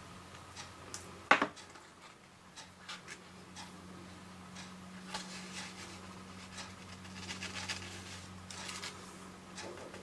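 Silver embossing powder sprinkled from a small plastic pot onto card: light pattering and small ticks, with one sharp tap about a second in. Later, paper rustling as the card is lifted and tipped to shed the surplus powder, over a steady low hum.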